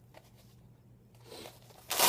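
Light handling rustle, then near the end the Velcro flap of a Cordura camera pouch is ripped open in one short, loud rasp.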